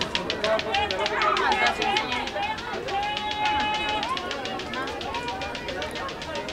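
Background voices and general bustle of an outdoor crowd, with no close speech. One voice holds a steady note for about a second midway.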